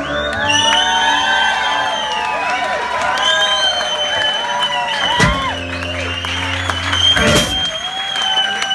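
Live acoustic blues played as a one-man band: guitar over sustained low notes, with sharp drum and cymbal hits about five and seven seconds in, as a song draws to its close. The audience whoops and cheers over the music.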